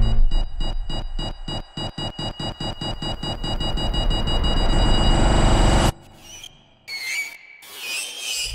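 Horror-trailer sound design: a fast electronic pulse with steady high tones that quickens and grows louder, then cuts off suddenly about six seconds in. A few short whooshes follow near the end.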